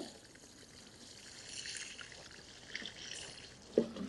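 Water running from a hose onto a tray of pea seedlings, a steady splashing trickle that soaks the foliage and compost before they are planted out.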